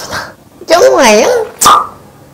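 A woman's loud exaggerated cry, its pitch swooping up and down for most of a second, followed by a short sharp shout near the end.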